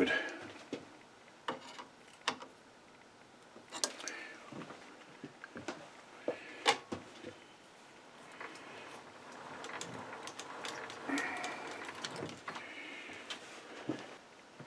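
Scattered light clicks and knocks of hands handling a threaded metal part at a lathe chuck, the sharpest about seven seconds in.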